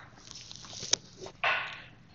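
A person breathing close to the microphone: a soft drawn-in breath, a single sharp click, then a short, louder breath about one and a half seconds in.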